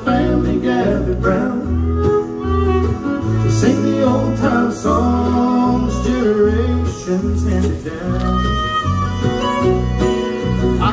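Live bluegrass band playing, with fiddle, banjo, acoustic guitar, mandolin and electric bass, and some singing. The bass steps between notes about twice a second.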